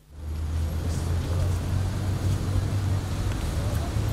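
Steady low rumble of road traffic, with faint voices murmuring behind it.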